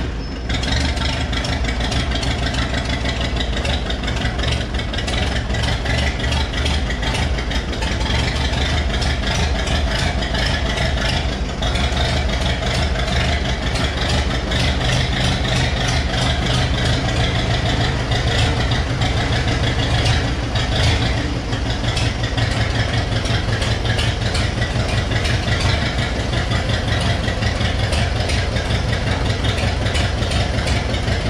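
Ursus C-360-based Ostrówek K-162 backhoe loader's three-cylinder diesel engine running steadily at low revs while the machine moves slowly, its low rumble growing fuller about twelve seconds in.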